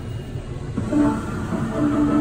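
Touchscreen kiosk's game jingle: a run of held, horn-like notes begins about a second in, over a low steady background rumble.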